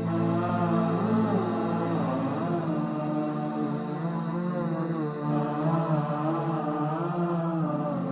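Intro music: a chanting voice in a wavering, ornamented melody over a steady low drone.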